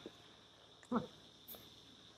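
Near silence during a pause, broken by one brief, short pitched sound about a second in, like a small voiced 'mm' or whimper, and a faint tick shortly after.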